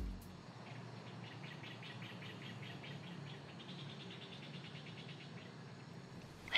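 Faint insect chirping, likely crickets: a quick even run of short high chirps, several a second, that swells in and fades out, over a low steady background.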